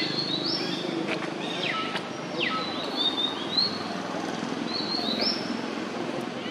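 Birds chirping: short high two-note calls repeat every second or two, with a few quick downward-sliding calls about two seconds in, over a steady low background murmur.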